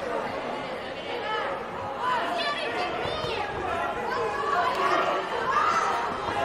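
Several voices talking and calling out over one another in a large hall, with a few high shouts about two to three seconds in.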